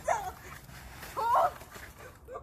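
Two short high-pitched vocal cries, one at the very start with a falling pitch and a louder one about a second in.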